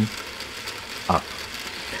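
A model T8 tank locomotive running on a roller test stand: its motor and gear train give a steady mechanical running noise as the driven wheels turn the rollers.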